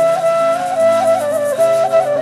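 Instrumental passage of traditional music: a flute plays an ornamented melody with quick turns, over sustained lower accompanying notes.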